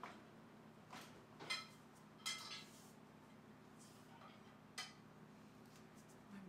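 Ceramic plates and dishes clinking against each other and the rack as they are lifted out of a dishwasher: about five separate clinks, two of them ringing briefly.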